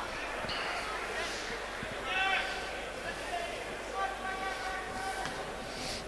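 Open-air football stadium ambience with a few distant men's shouts and calls from the pitch, the clearest about two seconds in.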